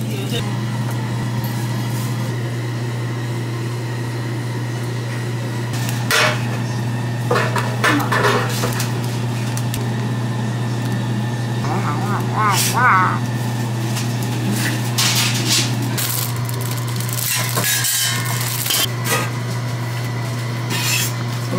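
Steady low hum of kitchen equipment, with scattered light clinks and knocks of utensils and dishes being handled, and a short wavering vocal sound about halfway through.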